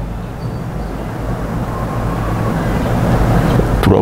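A steady low hum with a haze of hiss, slowly growing a little louder, in a pause between a man's spoken phrases. A word begins right at the end.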